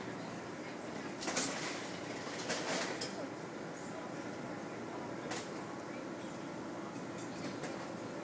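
Outdoor patio ambience: a steady background murmur with a low hum, broken by two short rustling noises in the first three seconds and a sharp click about five seconds in.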